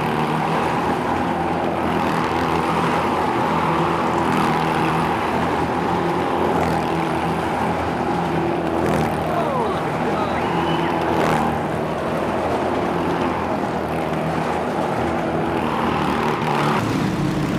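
Motorcycle engines running at steady revs as riders circle a wall-of-death drum.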